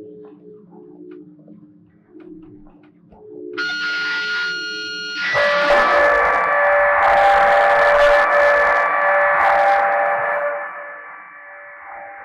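Live experimental noise music from voice into a handheld microphone, run through effects pedals and a laptop. A low, wavering pitched drone; about three and a half seconds in a cluster of high steady tones comes in, and about five seconds in a loud, dense wall of distorted noise with held tones takes over, easing back to a quieter sustained tone near the end.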